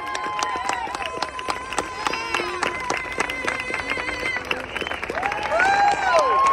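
A large crowd clapping and cheering, with whoops, as the national anthem ends.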